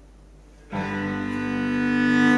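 Cello and piano music: a soft note fades away, then about three quarters of a second in the cello enters suddenly and loudly with a long bowed note.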